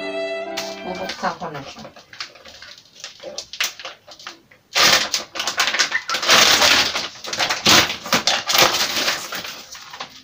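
Clear plastic overwrap of a peritoneal dialysis solution bag crinkling loudly as it is torn open and pulled off the bag, starting with light crackles and turning into a dense, loud rustle from about halfway through.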